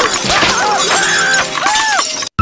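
Loud, harsh shattering noise like breaking glass, with wavering pitched sounds layered over it.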